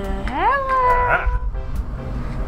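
A single high voice-like call that rises quickly in pitch and is then held steady for about a second, over background music.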